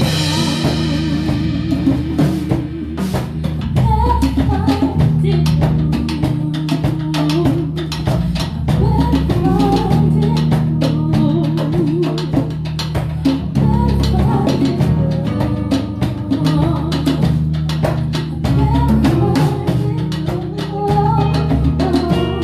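Live soul band playing an instrumental passage: a drum kit keeps a steady beat under a bass line and a wavering melodic line, with a cymbal crash ringing out at the start.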